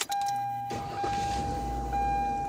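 Mercury Cougar's 2.5L V6 starting up: a noisy burst about two thirds of a second in, then a low engine rumble that builds and settles into running. A steady high electronic tone sounds throughout.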